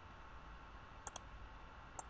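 Two quick computer mouse button clicks close together about a second in, over faint room tone.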